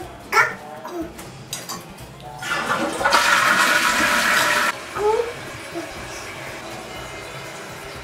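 Eljer toilet flushing, worked by its lever: the rush of water builds about two and a half seconds in, is loudest for a second and a half, and cuts off suddenly near five seconds. Brief small vocal sounds come before and after it.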